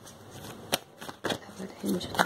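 A deck of tarot cards being shuffled by hand: a few sharp card snaps, the loudest a little under a second in, with more toward the end.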